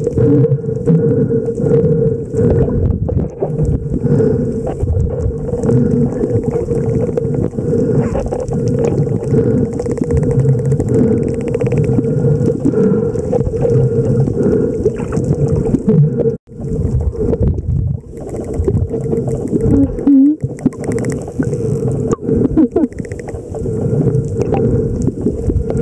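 Underwater sound among a pod of spinner dolphins: a steady rush of water noise with the dolphins' scattered clicks and short calls. The sound drops out briefly about sixteen seconds in.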